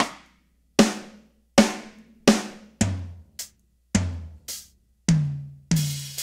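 Single sampled drum-kit hits from EZDrummer, played one at a time about every 0.6 to 0.8 seconds, around ten in all. Each hit is a different drum of the kit as the piano-roll keys are clicked in turn to audition which drum each MIDI note plays.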